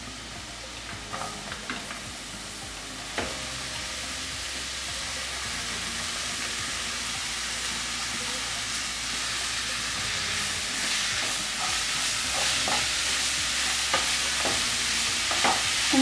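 Chopped carrot, beans and grated beetroot frying in a nonstick frying pan, sizzling steadily and growing louder, while a spatula stirs and scrapes through them with an occasional sharp knock against the pan.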